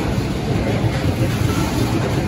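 Freight train of tank wagons passing close by at speed, its wheels and wagons making a steady, loud rumble on the rails.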